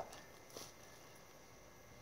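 Near silence: faint outdoor background, with one soft, brief sound about half a second in.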